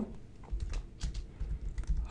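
Computer keyboard typing: a quick run of keystrokes that starts about half a second in.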